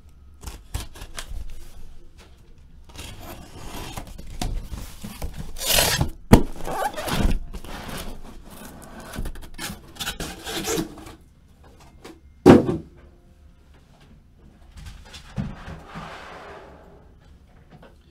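A cardboard shipping case being opened and the shrink-wrapped boxes of trading cards inside slid out and stacked. The sounds are scraping and rubbing of cardboard and plastic wrap, and sharp knocks as boxes are set down, the loudest about six and twelve seconds in.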